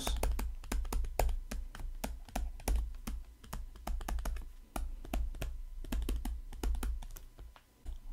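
Stylus tip tapping and clicking against a tablet screen during handwriting: a quick, irregular run of small clicks, several a second, with a brief pause near the end.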